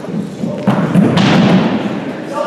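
Footfalls of someone sprinting across a sports hall floor, a run of dull thuds that carry in the hall, with a louder burst of broad noise about a second in.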